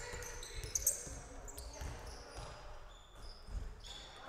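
Basketball bouncing on a hardwood gym floor, irregular thuds, with short high squeaks of sneakers on the court.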